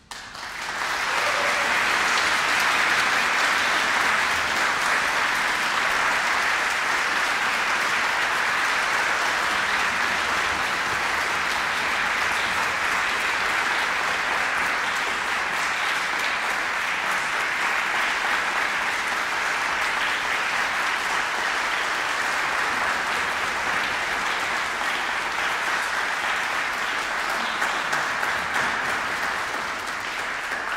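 Applause breaking out just after the final chord of a piano concerto dies away, holding steady and fading near the end.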